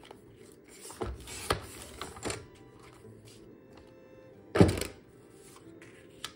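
Paper trimmer's blade slider drawn along its rail, cutting through cardstock photo mats with a rasping slide and a few clicks. Near the end comes a single sharp thunk.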